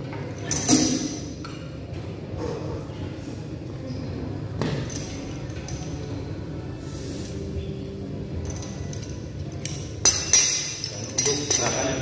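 Metal cable-machine attachments clinking and knocking as a handle and a straight bar are handled and clipped onto the low-pulley cable. There is a loud clank about a second in and a quick run of sharp metallic clinks near the end.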